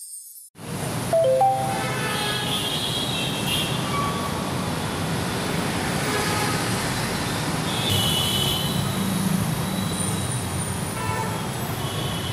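Loud, steady outdoor street noise, traffic-like, starting suddenly about half a second in, with a few faint scattered tones above it.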